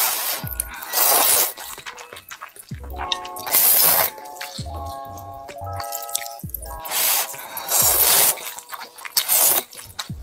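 Noodles in soup being slurped from chopsticks: about six loud, wet slurps spaced a second or two apart, over background music with a light melody of short notes.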